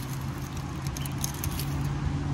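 A steady low engine hum, as of a vehicle idling nearby, with faint scratches and clicks of fingers feeling along a wooden barrier post and its metal bracket for a hidden magnetic container.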